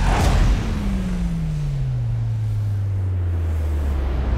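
Cinematic sound-design whoosh: a sudden rushing burst, then a steady rushing rumble under a low tone that slides downward over about two seconds, for the genie erupting from the bottle as smoke.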